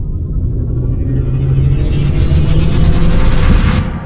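Cinematic logo-intro sound effect: a loud, deep rumble under a rising hiss that swells over several seconds and cuts off sharply just before the end.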